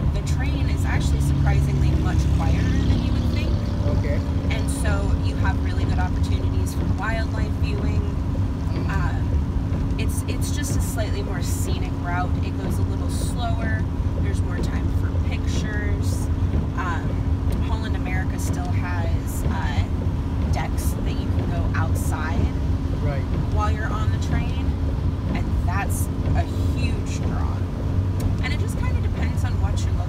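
Steady engine and road drone heard inside the cabin of a moving Chevrolet van at highway speed, with faint, indistinct talk over it.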